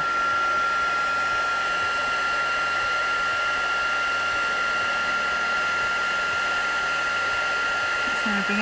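Embossing heat gun running steadily, its fan blowing with a steady whine, as it melts clear embossing powder on card.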